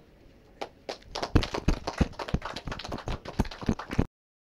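Applause from a small audience of hand claps, starting about half a second in and cut off suddenly at the end.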